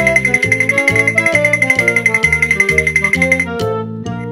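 Background music with a bass line and melody under a fast, steady jingle; the jingle stops about three and a half seconds in, leaving a few ringing notes.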